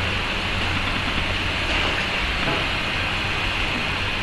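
Steady, even hiss of background noise with a low hum underneath and no distinct events.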